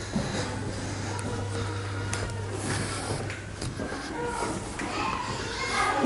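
Faint, indistinct voices over a steady low hum that fades out about four and a half seconds in, from the sound effects played on the ship's lower deck.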